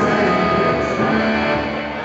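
Electric guitar played on a live stage through an amplifier, a few held notes ringing out.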